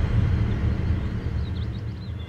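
Low rumble fading away, the dying tail of a deep cinematic boom, with a few faint high bird chirps near the end.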